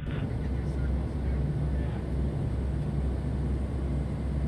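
Steady low drone inside the cabin of a P-8A Poseidon patrol jet in flight: engine and airflow noise heard through the fuselage, constant and unbroken.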